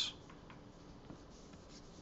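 Faint scratching of a pen stylus drawn across a graphics tablet's surface, with a light tick about a second in.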